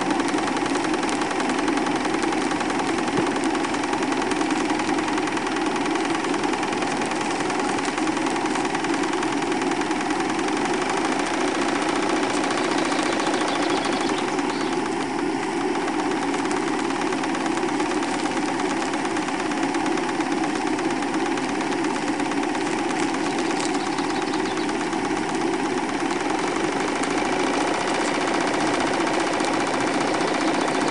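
Stuart Score model steam engine running steadily under steam, a continuous fast mechanical beat.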